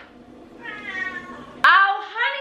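A house cat meowing once: a single drawn-out meow that rises and falls, starting about half a second in and lasting about a second.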